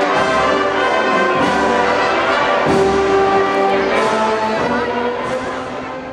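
Brass band music playing long held chords, growing quieter near the end.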